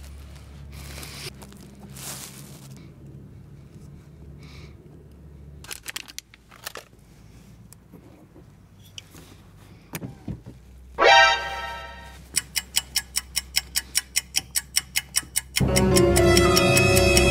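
Small clicks, knocks and rustling of a plastic pry tool and hands working at the trim of a Tesla Model 3 door panel. About eleven seconds in an added sound-effect sting comes in loud, followed by a fast ticking of about six beats a second, and then music just before the end.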